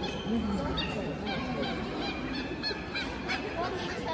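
A mixed flock of flamingos and stilts calling: many short, repeated goose-like honks and high yelping calls, with one lower honk just after the start.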